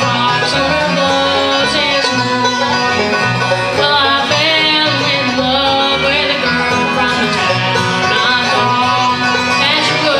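Live bluegrass band playing: banjo, strummed acoustic guitars and fiddle together at a steady tempo.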